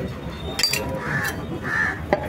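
A crow cawing twice, short harsh calls a little over half a second apart, over a steady market background din. A sharp click of the knife on the chopping block sounds just before the calls.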